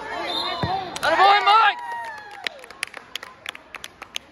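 Spectators shouting excitedly as a youth wrestling bout ends, with one sharp thump on the mat about half a second in. A run of scattered sharp knocks follows in the second half.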